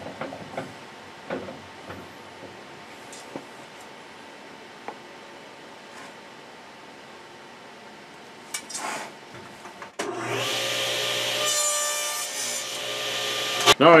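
Table saw crosscutting a half-inch wooden board, starting abruptly about ten seconds in and cutting off suddenly after about four seconds. Before it there are only faint knocks of the board being handled on the saw table.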